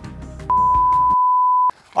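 Background music that cuts off just over a second in, with a steady, high, single-pitched electronic bleep laid over it for a little over a second, starting and stopping abruptly.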